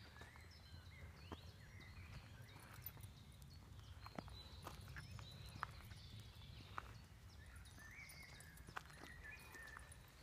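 Birds chirping faintly with many short calls throughout, over a low outdoor rumble, with a few scattered soft clicks.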